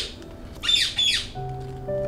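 A bird calling: two quick pairs of short, steeply falling squawks. About halfway through, a soft held music chord comes in.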